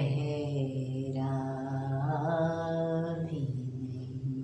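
A woman singing a ghazal: a long held melodic line with no clear words, bending in pitch over a steady low drone. Her voice tapers off a little before the end.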